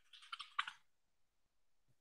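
A short, faint burst of typing on a computer keyboard: a quick run of keystrokes within the first second.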